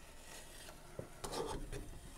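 Putty knife scraping and spreading two-part wood filler into a gap along a wooden window sash: a faint rubbing scrape, with a small click about a second in and somewhat louder scraping after it.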